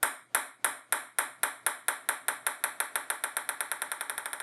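A ping-pong ball bouncing on a hard table: sharp ringing taps about three a second at first, coming faster and quieter as the ball loses height, until they run together into a rapid patter near the end.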